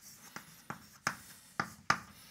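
Chalk writing on a chalkboard: a handful of short, sharp taps and strokes, about five in two seconds, as letters are written.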